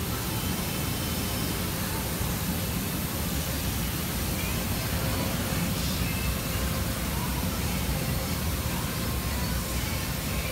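Steady rushing noise with a low rumble, heard from inside a car cabin, with no distinct events.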